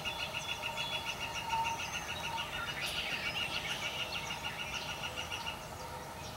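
Outdoor field ambience of birds calling. A steady, rapid pulsing trill, about eight pulses a second, runs under scattered short chirps and stops shortly before the end.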